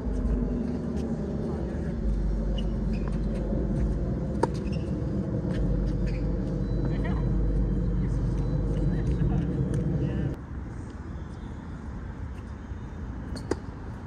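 A steady low mechanical hum, like a motor running nearby, that cuts off suddenly about ten seconds in. A few sharp taps of tennis balls are heard over it, one about four seconds in and one near the end.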